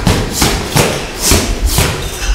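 Boxing gloves landing punches during sparring: about five sharp thuds in quick, irregular succession.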